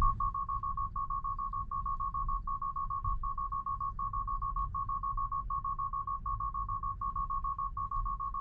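Tesla Model 3 Autopilot 'take over immediately' alarm: a loud, high-pitched beep repeating in quick runs of several beeps, each run coming about every three-quarters of a second. It sounds because basic Autopilot has lost the lane and the driver must take the wheel. A low road rumble from inside the cabin lies underneath.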